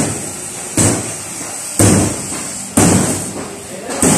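Heavy blows, one roughly every second, each striking suddenly and then echoing away.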